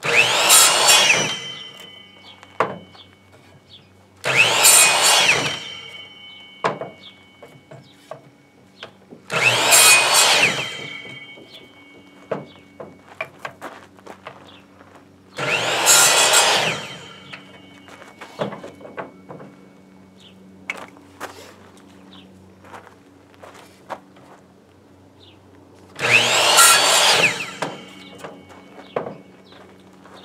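Electric miter saw making five chop cuts through OSB cleats, one at the start and then about 4, 9, 15 and 26 seconds in. Each cut is a loud burst of motor and blade noise lasting a second or two, followed by a falling whine as the blade spins down. Light clicks and clatter of handling the pieces come between the cuts.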